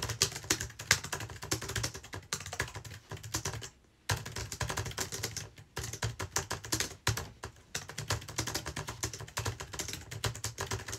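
Fast typing on a computer keyboard: a dense run of key clicks, broken by short pauses about four seconds in and again about seven seconds in.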